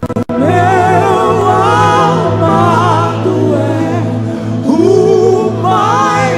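Live gospel worship singing over sustained held chords, with voices singing a wavering melody. The sound drops out briefly right at the start.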